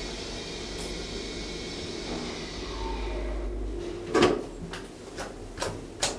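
Lift car travelling with a steady low hum that cuts off a little under four seconds in as it stops, followed by a loud clunk and then a few light clicks.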